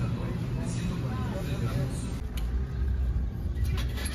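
Indistinct voices over a steady low rumble, with a few short clicks near the end.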